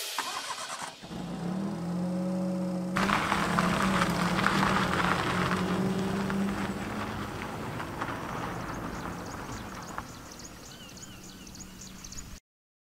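Small hatchback car's engine idling, then accelerating away about three seconds in and fading as it drives off. Birds chirp faintly near the end.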